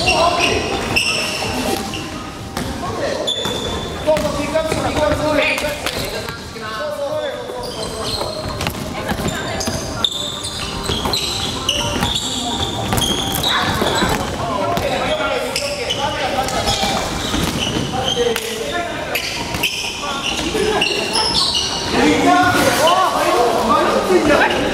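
Basketballs bouncing on a wooden gym floor during a scrimmage, with players' voices calling out, all echoing in a large hall.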